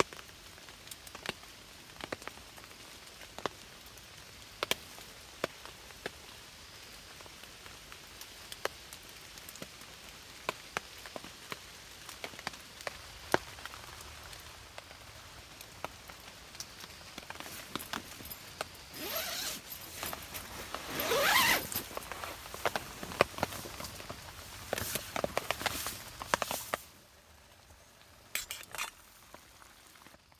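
Zipping and rustling of a bivvy tent and sleeping bag, louder in the second half, over a steady faint hiss with scattered light ticks.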